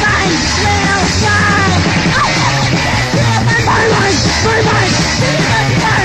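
Noise rock: distorted electric guitar and drums playing a loud, continuous wall of sound, with yelled vocals and sliding pitches over it.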